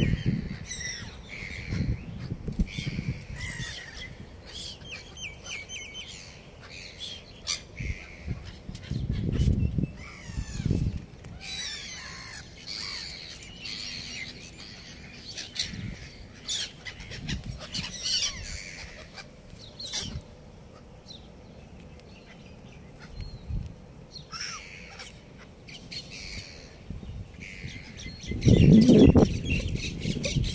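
A flock of gulls calling again and again as they circle low overhead, with occasional low rumbles, the loudest near the end.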